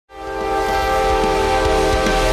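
Freight locomotive's air horn sounding one long held chord, fading in at the start, over a low rumble with irregular knocks from the passing train.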